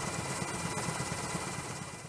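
A steady rumble and hiss with a faint high whine, like engine noise, fading down near the end.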